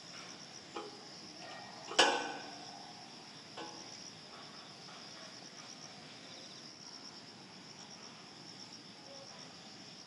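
Insects chirring steadily in a high, evenly pulsing band. A single sharp knock about two seconds in is the loudest sound, with two fainter knocks shortly before and after it.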